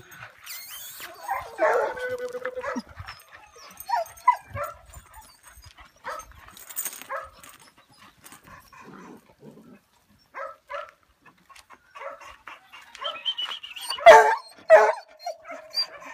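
Dogs barking and whining at intervals. Near the end a beagle barks loudly several times in quick succession.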